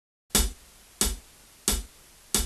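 Count-in on a play-along backing track: three sharp drum clicks about two-thirds of a second apart, marking the tempo before the groove begins.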